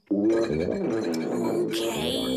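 A cartoon refrigerator character's voice: a long, wavering, pitched vocal sound, given as the fridge's reply urging the cat to have a snack.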